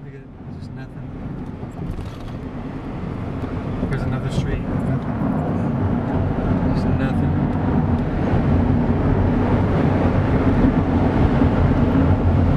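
Car driving at speed, heard from inside the cabin: a steady rumble of engine and tyre noise that fades in over the first few seconds.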